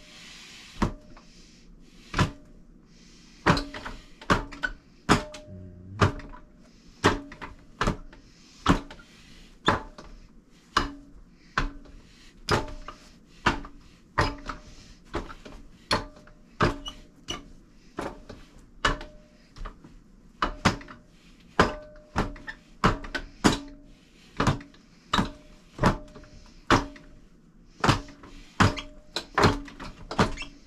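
Arms striking a four-armed wooden Wing Chun dummy: a steady run of sharp wooden knocks, irregular at roughly two a second and often in quick pairs, each with a brief ring from the wood.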